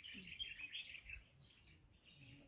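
Faint bird chirping and twittering, fading out a little past the first second.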